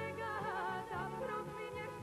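A woman singing a Yugoslav folk (narodna) song over instrumental accompaniment. Her held notes waver with a wide vibrato and ornamental turns.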